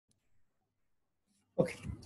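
Near silence, then a man's voice says "Okay" near the end.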